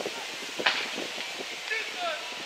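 Distant shouts and calls from footballers on the pitch over a steady wind noise on the microphone. A short, sharp sound stands out a little over half a second in.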